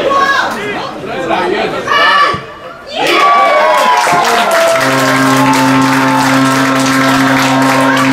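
Excited match commentary, then about three seconds in a long shout falling in pitch over cheering and applause as the goal goes in. From about five seconds in, music with a held chord comes in under the crowd.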